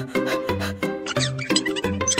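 Background music with a steady beat and held chords. In the second half a high, wavering squeaky cartoon sound effect plays over it.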